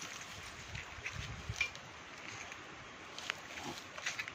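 Faint outdoor background noise with a few light clicks and rustles.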